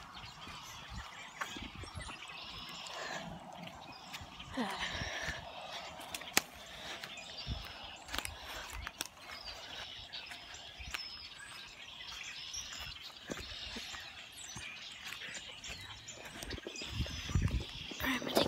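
Outdoor ambience with faint wild bird chirps and wind noise, along with rustles and knocks from a phone being handled. One sharp click stands out about six seconds in.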